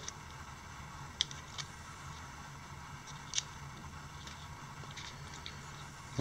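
Quiet room tone with a steady low hum and a few faint small clicks, about a second in, again just after, and near the middle, as a plastic digital caliper is closed on a small brushless drone motor's shaft.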